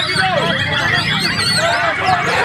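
White-rumped shama singing fast runs of rising and falling whistles, tangled with the songs of many other caged songbirds singing at once.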